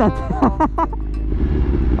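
BMW S1000RR inline-four engine running at steady revs while riding, with a steady rush of wind noise.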